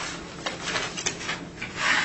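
Paper rustling as documents are handled and pages turned: a few short scuffs, then a louder rasp near the end.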